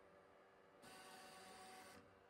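Near silence. A little under a second in, a faint steady whir with a thin tone starts: the idle fans and motors of a Sovol SV08 3D printer while it prepares to print.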